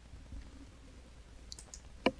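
Faint computer mouse clicks, two quick sharp ones about a second and a half in, over a low steady room hum, with a soft low thump near the start.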